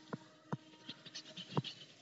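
Faint ticks and light scratching of a stylus writing on a pen tablet, with a few sharper clicks spread through the pause.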